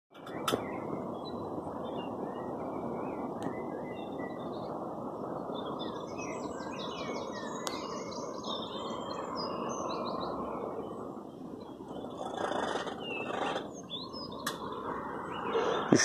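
Small birds chirping and trilling, busiest in the middle, over a steady background noise that eases after about eleven seconds.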